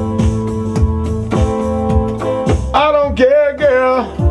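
Playback of a programmed beat for a blues-style R&B song: a drum-machine kick about twice a second under held chords. About three seconds in a man's voice sings a short wavering line over it.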